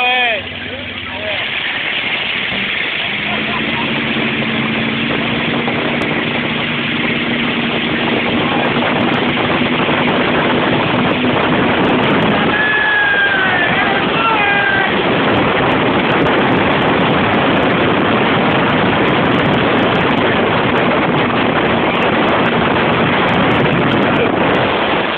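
Motorboat engine coming up to speed: its note climbs over the first few seconds, then holds steady under loud rushing wind and water from the wake.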